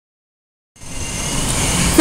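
Dead silence for the first moment, then a steady hiss with faint high whining tones fades in and grows louder: the background noise of the voice recording.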